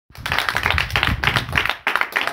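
Several people clapping their hands, a quick, irregular run of claps.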